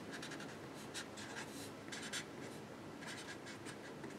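Felt-tip marker writing on a white sheet: a run of faint, short scratching strokes as letters are written out.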